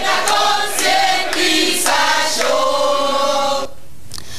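A group of men and women singing together in chorus, breaking off suddenly near the end.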